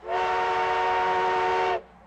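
Steam locomotive whistle blowing one long, steady chime-chord blast that cuts off sharply near the end. It is the train's departure signal after the call to board.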